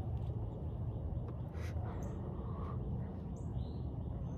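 Outdoor background: a steady low rumble with a few faint bird calls, one near the end.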